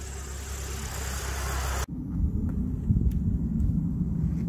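Light aircraft on the runway: a rushing engine noise that grows steadily louder. About two seconds in it cuts off suddenly and gives way to a low, uneven rumble.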